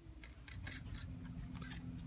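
Pokémon trading cards being handled and laid down on a desk: a few light scrapes and ticks of card against card and tabletop, over a faint steady hum.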